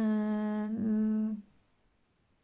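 A woman's drawn-out hesitation sound, "yyy", held on one steady pitch for about a second and a half.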